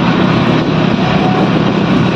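Engine of a moving vehicle running steadily on the road, loud, with a constant low hum under road and wind noise.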